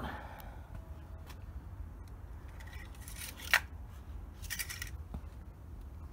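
Small handling noises from a metal oil dipstick being worked in its tube: short scrapes and one sharp click about three and a half seconds in, over a low steady hum.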